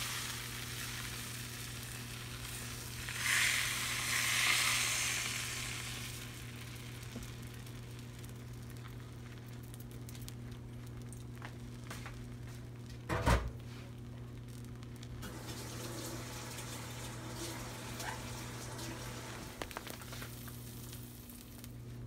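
Beaten eggs sizzling gently in a nonstick frying pan over low heat as they set into an omelet, the sizzle louder for a few seconds early on. A single knock about thirteen seconds in, over a steady low hum.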